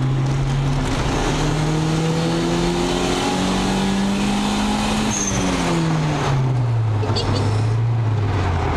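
LS/VTEC turbocharged Acura Integra's four-cylinder engine heard from inside the cabin while driving. From about a second in it pulls with a steadily rising pitch for about four seconds, then the pitch falls away as the throttle is lifted, with a brief high chirp as it lets off.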